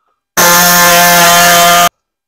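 Pneumatic air saw cutting through a truck's sheet-metal fender: a loud, steady, high-pitched running sound lasting about a second and a half, which starts and stops abruptly.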